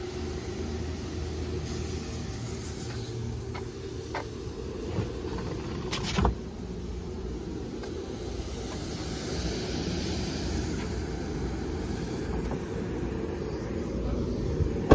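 A vehicle running with a steady low rumble, with a few light knocks over it and a sharper knock about six seconds in.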